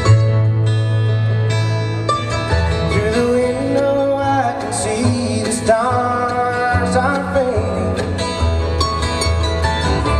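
A live bluegrass trio playing: acoustic guitar and mandolin over an upright bass that changes notes low underneath.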